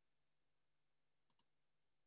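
Near silence, with a faint double click from a computer mouse a little past the middle.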